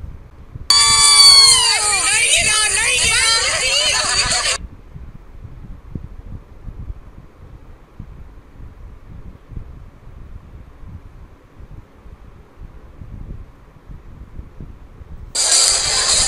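A loud, close voice for about four seconds, starting about a second in, then only a faint low background hum. Near the end a loud mix of music and voices starts abruptly.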